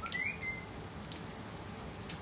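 A short high-pitched chirp that slides up and then holds briefly right at the start, among a few soft rustles of thin Bible pages being leafed through.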